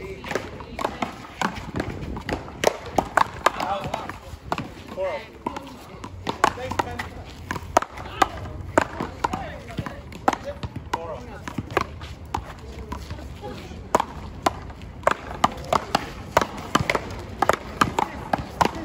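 Paddleball rally: repeated sharp smacks of paddles hitting the rubber ball and the ball striking the concrete wall, coming at irregular intervals, sometimes two in quick succession, with voices in the background.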